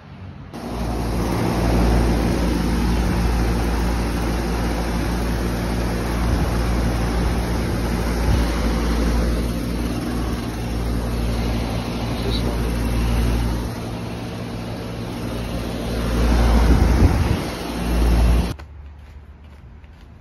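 Carrier Comfort outdoor condensing unit running: a steady low compressor hum under the even rush of its condenser fan. It cuts in just after the start, swells louder near the end and stops abruptly a second or two before the end.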